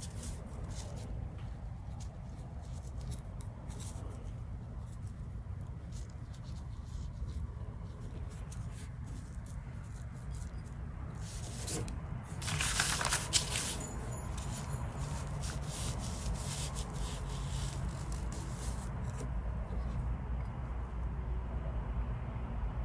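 Soft rubbing and faint scratchy ticks of a Chinese brush dragged over Pi rice paper as a tree trunk is painted, over a steady low hum. A little over twelve seconds in, a louder rustle lasting about a second as the paper sheet is handled and shifted.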